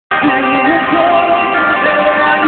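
Live rock band playing through a concert PA, with a male lead voice singing a melody that slides between held notes over sustained guitar and keyboard chords.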